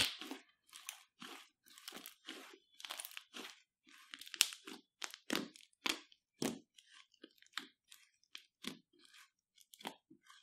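Fluffy slime mixed with glitter and makeup being squeezed and kneaded by hand: short, irregular crackles and squelchy pops, a couple to a few a second, growing sparser near the end.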